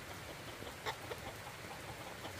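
Domestic chickens clucking faintly, with a short cluck just under a second in, over a steady hiss of rain.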